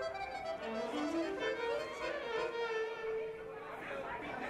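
Live band's lead melody: a quick rising run, then one long held, wavering note, with the music stopping just at the end.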